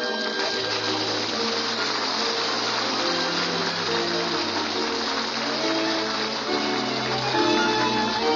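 Radio-show studio orchestra playing a short musical bridge, a melody of held notes moving step by step over a low bass line, marking the scene break into the commercial.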